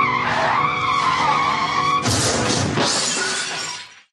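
Vehicle tyres screeching in a skid for about two seconds, then a crash that dies away shortly before the end: the sound of a road accident.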